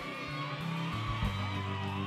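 Live rock band holding a soft sustained chord, with a low bass note coming in about a second in.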